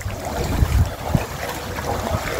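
Floodwater sloshing and splashing as a person wades through it, with low, irregular wind rumble on the microphone.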